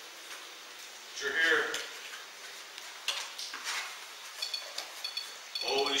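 A ghost-hunting proximity alarm with an antenna going off: short, high-pitched electronic beeps, about two a second, starting about two-thirds of the way in. It has been triggered by something near its antenna. A few faint clicks come before it.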